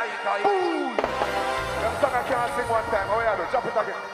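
Live dancehall music with a man's voice singing and chanting over a steady bass line. A falling swoop in pitch comes about half a second in.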